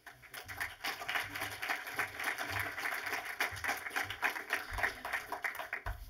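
Audience applauding: a steady round of many people clapping that dies away near the end.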